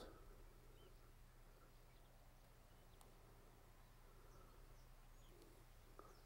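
Near silence: faint outdoor quiet with a few soft, brief bird chirps, mostly in the second half.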